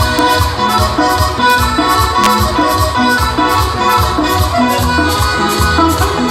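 Instrumental passage of a Latin dance band's song: a sustained-note lead melody over a pulsing bass line and a steady percussion beat, with no singing.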